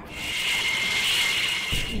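F-16 fighter's jet engine running: a steady high-pitched whine over a hiss, with a deeper rumble coming in near the end.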